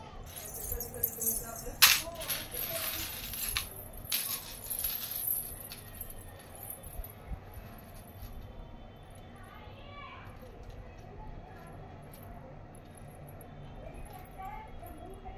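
Small silver bells on a baby's anklet jingling as the anklet is handled, with a sharp clink about two seconds in. The jingling dies away about halfway through.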